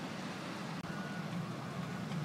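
Faint steady low hum of an idling vehicle engine over light outdoor background noise.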